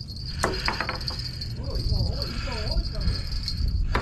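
A steady, high-pitched insect drone, like crickets, under a low rumble, with a voice heard briefly about halfway through.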